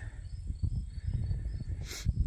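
Outdoor ambience in a speech pause: an uneven low rumble of wind on the microphone, with faint insects chirping in short, evenly spaced pulses.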